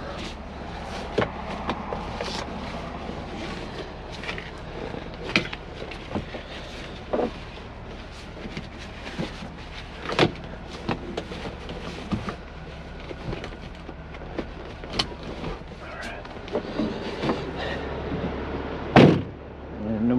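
Truck engine idling with a low, steady hum, with scattered clicks and knocks of handling inside the cab. A loud thump comes about a second before the end.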